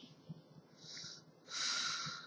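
A person breathing audibly near the microphone: a faint breath about a second in, then a louder one of air near the end.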